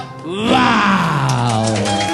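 A man's voice in one long sliding vocal note, rising briefly and then falling slowly, as the closing flourish of a sung comic number. Clapping starts as the note falls away.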